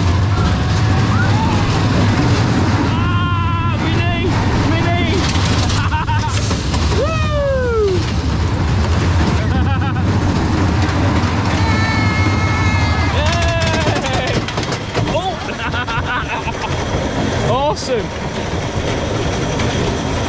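A small Wacky Worm (Caterpillar) family roller coaster train running round its track with a steady low rumble, which eases about fourteen seconds in. Riders let out several rising-and-falling 'woo' whoops over it.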